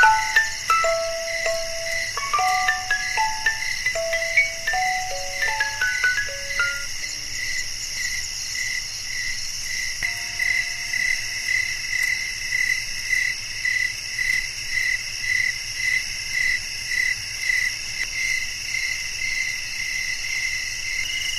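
Crickets chirping steadily at about two chirps a second. Over them, a music box's plucked notes fade out during the first several seconds, and one lone note sounds about ten seconds in.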